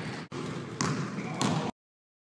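A basketball bouncing on an indoor court floor, with a couple of sharp bounces, over indistinct voices. The sound breaks off briefly a quarter second in and cuts off suddenly near the end.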